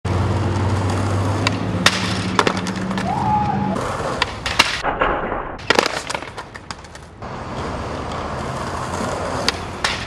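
Skateboard wheels rolling on concrete, with repeated sharp clacks of the board hitting the pavement, in several short takes that cut in and out.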